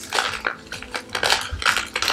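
A paper packet of Jello powder being shaken and squeezed over a plastic tub of iced water, making a run of short, irregular crinkles and clicks.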